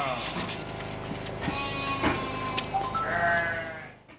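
A flock of sheep and lambs bleating, several calls overlapping, some long and held.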